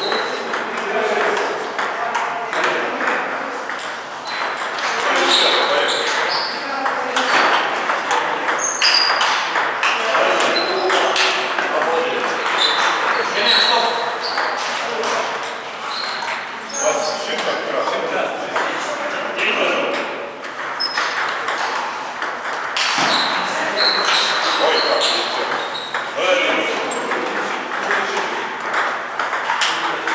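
A table tennis ball being struck back and forth by rubber-faced paddles and bouncing on the table, in rallies broken by short pauses between points.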